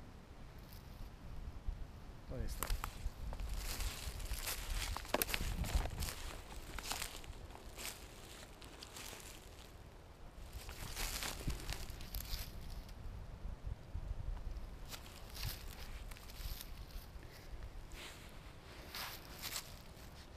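Footsteps and handling noise in dry leaf litter: irregular spells of crunching and rustling in dead leaves, with quieter gaps between them.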